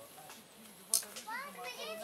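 Children's high-pitched voices calling out in the second half, over a lower voice talking quietly, with a sharp click about a second in.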